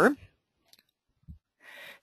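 A woman's spoken word trailing off, then a pause holding a faint click and a short soft thump, and an in-breath just before she speaks again.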